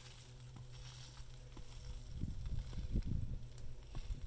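Rustling and dull low thumps, starting about two seconds in, as a freshly dug potato plant with its tubers hanging from the roots is handled and pulled up from the soil.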